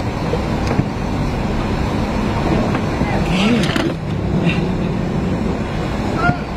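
Steady low engine rumble inside a ferry's enclosed car deck, heard from inside a car. A distant voice calls out briefly about three and a half seconds in.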